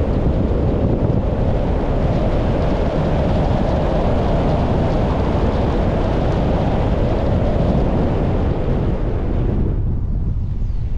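Wind buffeting the microphone over the steady road noise of a moving car. The higher hiss falls away suddenly near the end.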